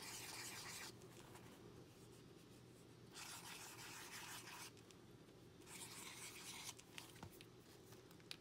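Marker tip drawing loops on a paper journal page: faint scratchy rubbing strokes in three short spells with quieter pauses between.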